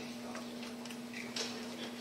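Low room sound through a hall's public-address system: a steady low electrical hum with faint scattered ticks and a small knock about one and a half seconds in.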